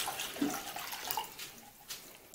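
Hot water poured from a plastic measuring cup into a stainless steel bowl, splashing steadily and then trailing off as the cup empties, with a light click near the end.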